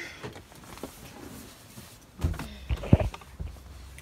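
Handling noise of a nylon puffer jacket rustling against the phone inside a car, with a dull thump a little over two seconds in and a single sharp click about three seconds in.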